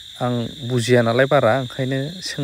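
A person talking, in a lowish voice, with a steady high-pitched whine running underneath.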